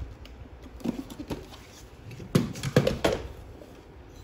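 Hard plastic clicks and knocks as the body of a Philips PowerCyclone 5 bagless vacuum cleaner is handled: a few taps about a second in, then a louder cluster of knocks between two and three seconds in.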